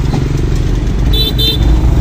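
Steady low rumble of an open military jeep's engine and road noise while riding along a street, with two short high-pitched beeps a little over a second in.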